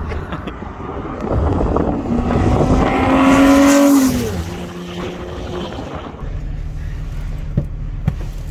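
A Nissan 350GT's 3.5-litre V6 passing on a wet road. The engine note and tyre hiss build up and peak, then the pitch drops sharply as the car goes by about four seconds in. Near the end there is a steady low engine drone inside the car's cabin.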